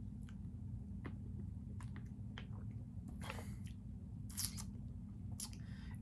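Faint mouth and swallowing sounds of a person drinking from a plastic bottle: scattered small clicks, then three short breathy noises about three, four and a half and five and a half seconds in.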